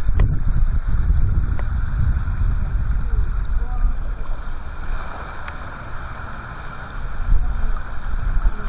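Strong wind buffeting the microphone, a heavy uneven rumble over a steady hiss of wind and water. It eases for a couple of seconds past the middle, then picks up again.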